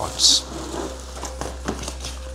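Plastic packaging crinkling and rustling, with a few sharp crackles, as plastic-wrapped bar stool parts are pulled out of a cardboard box.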